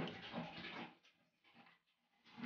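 A calf drinking water from a metal bucket: a few faint slurps, all within the first second.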